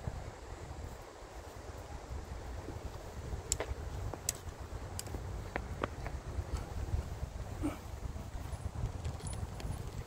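Wind buffeting a phone microphone outdoors as an uneven low rumble, with several short sharp clicks a few seconds in.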